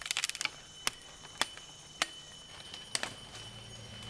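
Sharp wooden clicks and cracks as a bent-sapling snare trap is handled: a quick run of clicks at the start, then single cracks every half second to a second. A faint steady high insect whine runs underneath.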